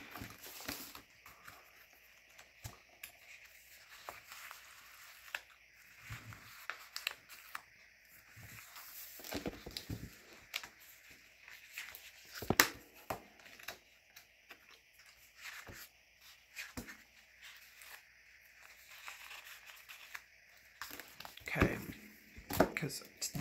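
Paper handling: sticker-book pages flipped and paper stickers peeled off their backing sheet, making sporadic soft rustles and small clicks, with one sharper snap about halfway through.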